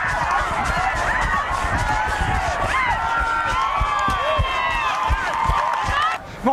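A crowd of spectators shouting and cheering, many voices yelling over one another, with scattered low thumps under them.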